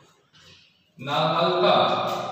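A man's voice holds one long, chant-like vowel sound. It starts suddenly about a second in and is the loudest sound here.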